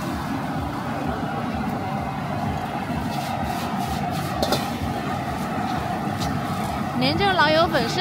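Steady roar of a street-stall gas wok burner, with rice noodles sizzling as they are stir-fried in the wok and a few light scrapes of the spatula. A man's voice starts near the end.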